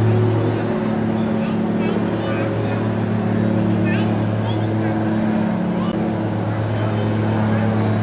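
A steady low mechanical hum with a droning tone that holds constant throughout, with faint, indistinct voices and a few short high chirps over it.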